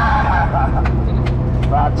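Amphibious tour bus engine running steadily with a low hum, with brief snatches of voices over it.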